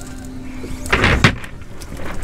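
A brief rustling swish of a nylon cast net and its lead line being handled, about a second in, over a faint steady hum and low rumble.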